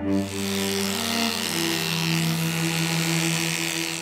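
Electric dog grooming clippers running as they shave through a matted coat, a dense buzzing hiss that starts suddenly, with cello music underneath.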